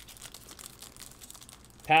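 Faint, irregular crinkling of a foil trading-card pack wrapper, a 2021 Optic Football hobby pack, torn open and handled in gloved hands.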